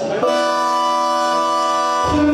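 Live band music: a single chord held as a long sustained tone, with no bass or drums under it. The full band comes back in right at the end.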